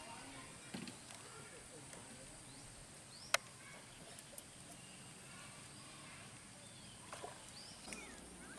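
Faint open-air ambience at a fishing pond: distant chatter of anglers and scattered short bird chirps over a steady high hiss, with one sharp click a little past three seconds in.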